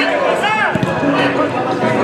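Men's voices shouting and calling out during a football match, several at once, with a loud call about half a second in.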